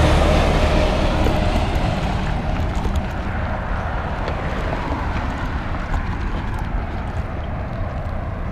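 Semi-truck passing close by. Its engine and tyre noise is loudest at the start and fades over the next few seconds as it moves away, leaving a steady low rumble.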